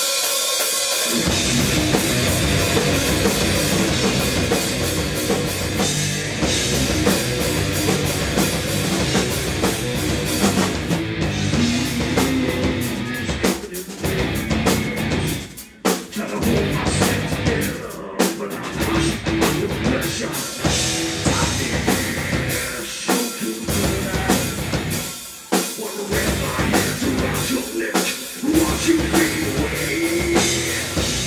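Live heavy metal band, with electric guitars, bass guitar and drum kit, playing loud. The band comes in all at once, then cuts out briefly several times for short stops before crashing back in.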